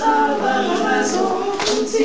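A small group of voices singing together without instruments, holding notes and moving from one to the next.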